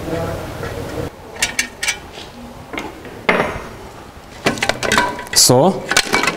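Metal clinks and knocks of a car clutch pressure plate and clutch disc being worked off the engine's flywheel and handled by hand, a scatter of sharp taps with the loudest about halfway through.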